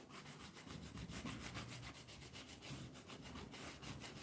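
Faint, rapid back-and-forth rubbing of a hand-held pad over a painted pine board, laying on a dry patina.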